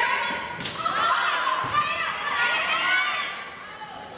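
Volleyball being struck during a rally: two sharp hits about a second apart, among players' high-pitched shouts and calls, in a large gymnasium.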